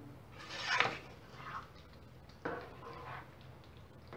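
Silicone spatula stirring thick, creamy chicken stroganoff in a nonstick pan: several wet scraping, squelching strokes, the loudest about half a second in.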